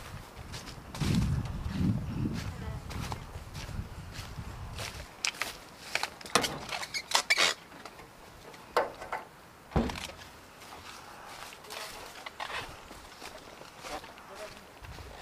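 Footsteps crunching through dry fallen leaves, with a low rumble in the first few seconds. From about five seconds in come a string of sharp rustles, knocks and scrapes as the fabric sheet on a wrecked light aircraft's fuselage is handled and pulled aside.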